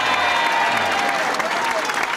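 Audience applauding, a steady clapping that fills the room.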